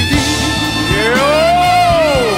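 Live band music in an instrumental break between sung lines, with a long sustained tone that slides up and back down in the second half.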